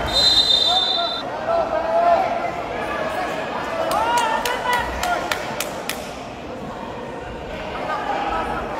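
Indoor wrestling arena: a referee's whistle sounds for about the first second, then people in the hall shout and call out. A quick run of about six sharp smacks comes around the middle.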